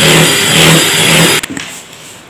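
Electric hand mixer running steadily, its beaters whipping butter and icing sugar into buttercream in a plastic bowl, then switched off suddenly about one and a half seconds in. This is the last beating of the buttercream, which is now ready.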